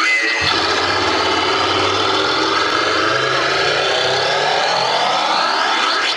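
An engine-like sound effect played over the PA in the routine's soundtrack: a low hum starting suddenly about half a second in, with a whine that rises toward the end.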